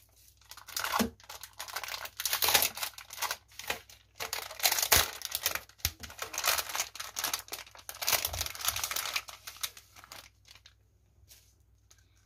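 Clear plastic packaging bag being pulled open and crinkled by hand to free a small notebook, in irregular crackling bursts that stop about two seconds before the end.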